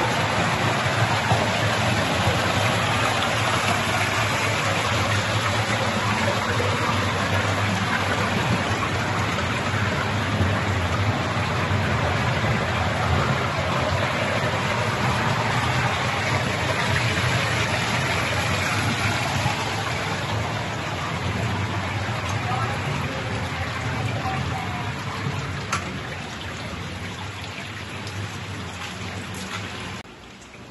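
A mountain stream rushing beneath a metal grating walkway in a narrow rock gorge: a steady, rain-like hiss of running water that grows gradually fainter toward the end.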